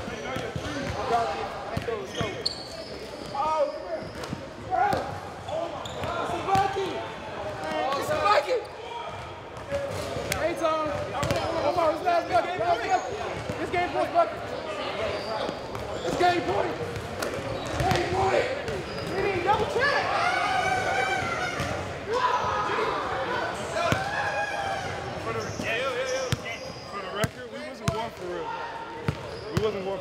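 Basketballs bouncing on a hardwood gym floor, many short sharp thuds, with players' voices and shouts echoing in a large gym hall.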